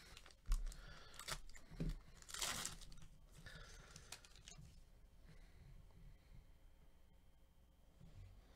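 Wrapper of a Panini Revolution basketball card pack being torn open by hand: a few short crinkles, then one longer rip about two and a half seconds in, followed by faint rustling as the pack is handled.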